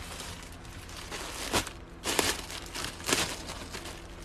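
A clear plastic bag crinkling as it is handled, irregular rustling with a few sharp, louder crackles.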